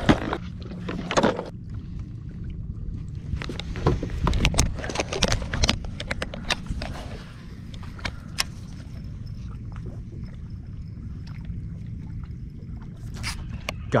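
Clicks and rattles of a clear plastic tackle box and lures being handled for the first several seconds, then the sparser clicks of a fishing reel being cast and worked. A steady low rumble runs underneath.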